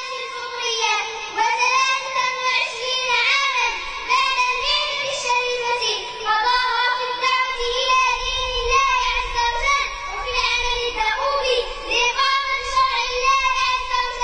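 A young girl's voice chanting melodically, in phrases of a second or two with long held notes that bend up and down.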